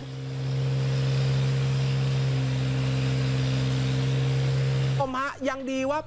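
Excavator's diesel engine running at a steady speed, a low even drone with a faint higher hum above it. Talking takes over near the end.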